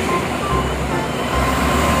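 A tank truck driving past on a highway, a steady rush of diesel engine and tyre noise with a low rumble.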